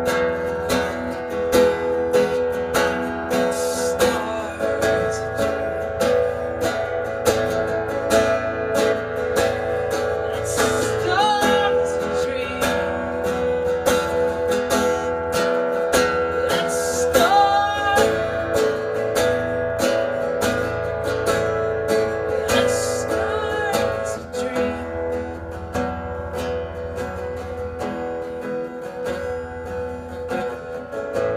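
Acoustic guitar strummed steadily through an instrumental stretch of a song.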